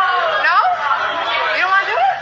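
Several voices talking over one another in party chatter, too jumbled to make out words.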